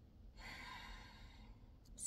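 A woman's soft sigh: one faint breath out, lasting about a second, starting about half a second in.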